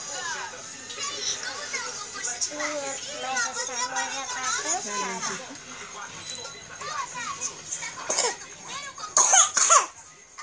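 A children's cartoon playing through a small phone speaker, with voices and music, mixed with children's voices. Just before the end comes a short, loud burst of noise.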